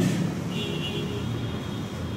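Steady low background rumble, with a felt-tip marker writing on a whiteboard.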